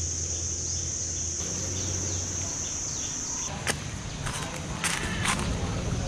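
Steady high-pitched drone of insects in the trees, which cuts off about three and a half seconds in. Footsteps and a few sharp clicks follow.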